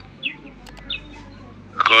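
A few short, high chirps of a bird in the background during a pause, before a man's voice comes back in near the end.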